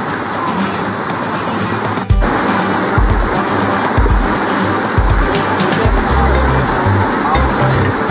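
Steady rushing of a stream cascade, with background music laid over it; after a short break about two seconds in, a heavy rhythmic bass line is heard.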